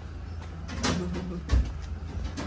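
Short handling sounds as a padded arm splint is fitted and strapped on: a few light knocks and a scrape, then a dull thump about one and a half seconds in.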